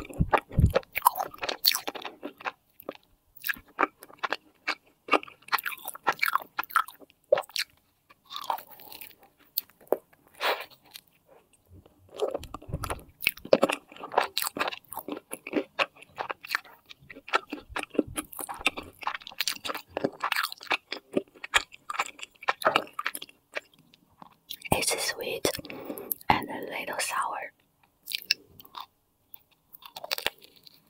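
Close-miked chewing and biting of a cream puff with a crisp top: soft crunches and wet mouth sounds in many short, irregular bursts.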